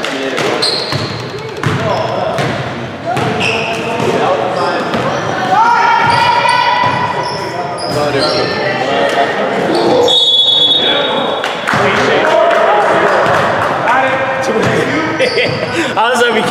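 Basketball game in an echoing gym: the ball bouncing on the hardwood floor, sneakers squeaking, and players calling out.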